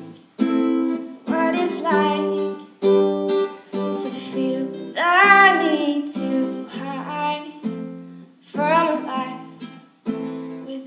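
Acoustic guitar strummed in chords, with a woman's voice singing over it in a few sustained phrases.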